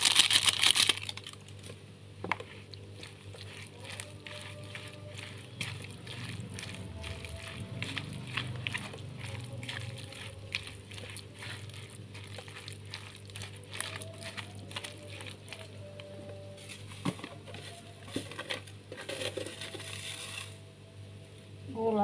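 A seasoning sachet crinkling and being emptied in the first second, then soft, irregular clicks and scrapes of softened fish crackers being mixed with spice paste and powdered broth in a bowl, over a faint steady hum.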